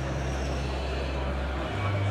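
Rock band playing live through a large hall's PA, picked up by a phone microphone: low sustained bass notes that shift pitch about a second and a half in, over a wash of band and hall noise.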